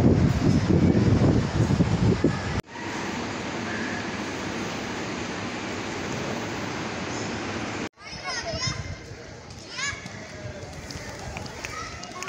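Steady background hubbub of voices, with a loud low rumble in the first couple of seconds, broken by two abrupt cuts. After the second cut, children's high voices call out as they play.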